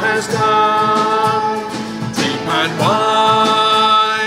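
A worship song sung with instrumental backing, the voice holding long notes that slide into each new pitch.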